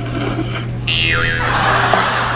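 Noodles being slurped hard over a steady low hum. A little under a second in, a loud hissing suction noise with a brief falling whistle cuts in suddenly and carries on to the end: a comic 'vacuum' slurp.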